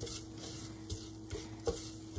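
Silicone spatula stirring a butter-and-flour roux in a small saucepan, a faint scraping and sizzling with a few light taps against the pan. A faint steady hum runs underneath.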